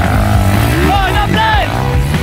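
Underbone motorcycle engines revving under a music track, with a voice singing about a second in.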